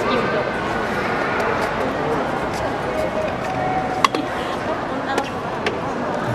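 Background chatter of several people talking at once, with a few sharp clicks, the loudest about four seconds in.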